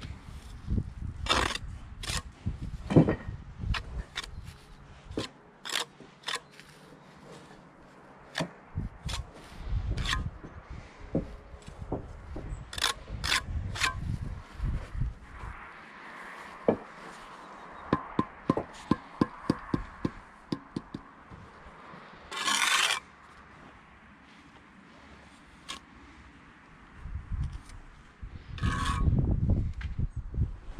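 Steel brick trowel working mortar: scraping and spreading it on bricks, with sharp taps as bricks laid on edge are knocked down into the mortar bed, including a quick run of about ten taps past the middle and a loud scrape shortly after.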